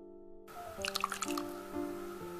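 Kimchi liquid poured over chopped kimchi in a glass bowl, a short run of splashes and drips for about half a second near the middle, over background music.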